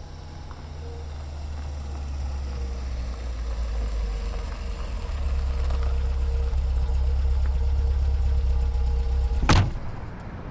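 Car engine idling, a low steady rumble that grows louder, then a car door shuts with a loud thump near the end.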